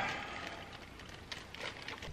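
Quiet room tone with a few faint, light clicks around the middle.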